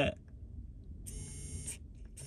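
SwitchBot Bot's small electric motor buzzing steadily for about half a second, a little over a second in, as its arm pushes on a door-lock button. It is not quite strong enough to push the button down.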